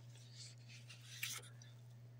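A quiet room with a low steady hum and two faint, brief scratchy rustles, one about half a second in and one just past a second.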